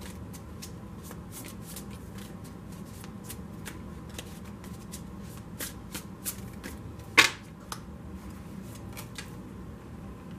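A tarot deck being shuffled by hand, packets of cards lifted and dropped from hand to hand: a run of short, irregular card slaps, the loudest a little after seven seconds in.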